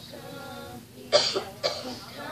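A person coughing twice, loudly, about a second in and again half a second later.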